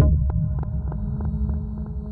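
A low, steady droning hum from the background soundtrack, coming in suddenly and slowly fading.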